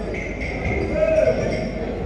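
Faint speech over steady background noise in a large hall, with a short spoken sound about a second in.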